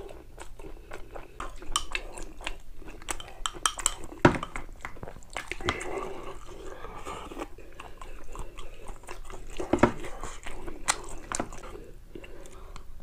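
Close-miked chewing and mouth sounds of a man eating, with light clicks of a wooden spoon and chopsticks against ceramic bowls. Two louder knocks come about four seconds in and again near ten seconds.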